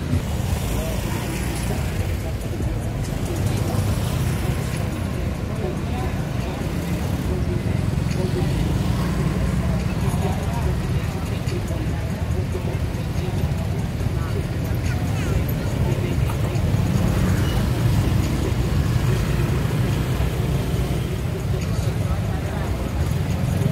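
Busy street ambience: a steady low rumble of vehicle traffic with people talking in the background.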